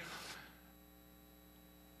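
Near silence with a faint, steady electrical hum; a voice's reverberation dies away in the first half second.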